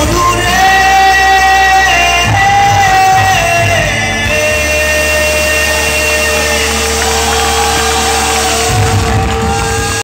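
Live band performance of a Bengali song: a male singer holding long notes over electric guitar and keyboard, with a steady low bass underneath. The notes step in pitch every second or two and the music carries on loud throughout.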